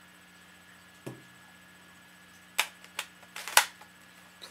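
Plastic magazine of a spring airsoft machine pistol being handled and pushed into the grip: a soft knock about a second in, then a few sharp plastic clicks in the second half, the loudest near the end as the magazine goes home.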